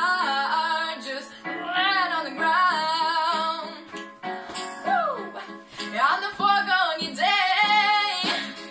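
A teenage girl singing a pop ballad over instrumental accompaniment, holding notes with vibrato and sliding between pitches in several phrases.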